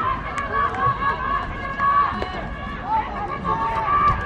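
Several voices calling out in long, drawn-out shouts over crowd chatter.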